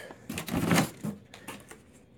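Handling noise: a brief rustle followed by a few light clicks and knocks, as the boxed mower and its cardboard packaging are handled.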